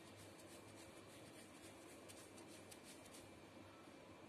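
Faint, repeated scratchy strokes of a damp sponge rubbed over paper backing on a glass bottle, several a second, stopping shortly before the end. The wetting soaks the transfer sheet's backing so the print transfers onto the glass.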